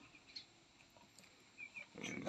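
Near silence, with a few faint, short bird chirps near the end.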